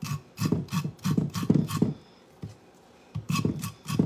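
Kitchen knife blade scraped down fresh ears of corn into a bowl in a quick run of strokes, a pause of about a second, then a few more. The scraping works the starchy milk out of the cobs to thicken the corn.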